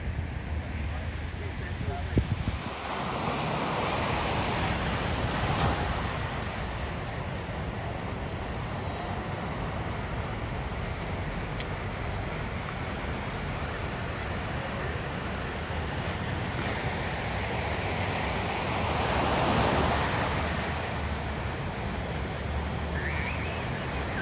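Ocean surf breaking and washing in, with wind rumbling on the microphone. The surf swells louder twice, a few seconds in and again near the end.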